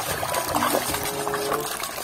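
Water sloshing and splashing in a plastic basin as a hand swishes a small plastic toy through it to wash it.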